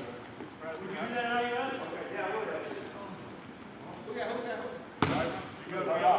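A basketball bounces on the hardwood gym floor, one sharp bounce with a short ring about five seconds in, with indistinct players' voices in the hall.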